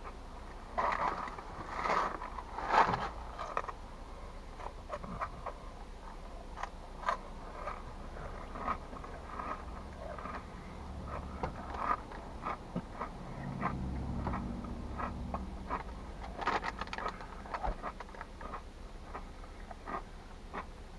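Cheetos Cheddar Jalapeno cheese puffs being crunched and chewed, with the snack bag crinkling, heard as a run of small irregular crackles and clicks. A low rumble rises for a few seconds about two-thirds of the way through.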